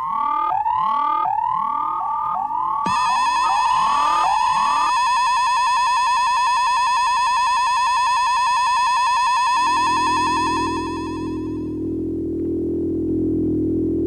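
Electronic science-fiction sound effects. A steady tone with repeated swooping up-and-down chirps, a little under two a second, gives way after about three seconds to a warbling, buzzy electronic tone that fades out near the end, while a low droning hum comes in about ten seconds in.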